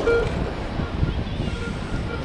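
Metal detector giving a few short beeps as its coil passes over a deep target in a dug hole, over wind noise on the microphone.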